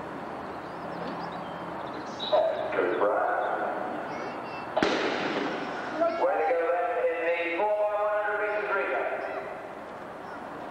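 A single starting pistol shot about halfway through, sharp and echoing, followed by spectators shouting and calling out loudly.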